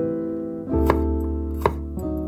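A chef's knife chopping through a red bell pepper onto a wooden cutting board: two sharp chops about three-quarters of a second apart, over piano background music.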